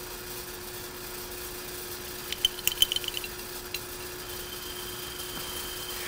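Drill press running with a steady hum as a twist drill bores a hole through a thin metal enclosure. A quick run of ticks comes about two and a half seconds in, and a faint high whine joins near the end.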